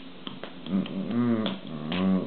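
A man's low wordless vocalizing in a few phrases with bending pitch, punctuated by a few sharp finger snaps.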